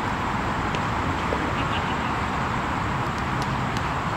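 Steady outdoor background noise at a ballfield, with faint distant voices and a few faint clicks.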